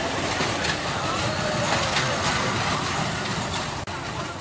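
A small roller coaster's train of cars rumbling and clattering steadily along its steel track.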